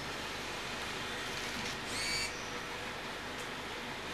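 Quiet room tone with a faint steady hum, and one brief high-pitched squeak about two seconds in.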